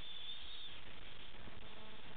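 Steady background hiss of the recording microphone in a pause between words, with a faint high whine in the first half second or so.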